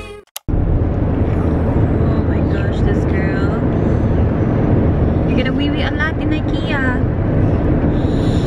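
Steady road and engine rumble inside a moving car's cabin, starting suddenly about half a second in, with faint voices talking now and then.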